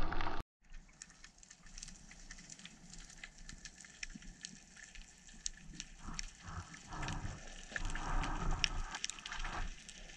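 Underwater reef ambience heard through a diving camera: a dense crackle of tiny clicks, with a swishing of water growing louder from about six seconds in.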